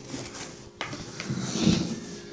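Handling noise close to the microphone: a sharp click a little under a second in, then louder scraping and rustling as a toy giraffe is moved about on a table.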